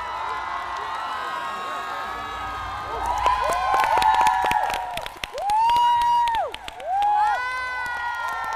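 Audience cheering and applauding. About three seconds in, loud high whoops and screams rise above the clapping, among them one long held call near the middle.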